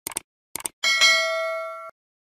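Subscribe-button animation sound effect: two quick double clicks, then a notification-bell chime. The chime rings for about a second, fading, and is cut off short.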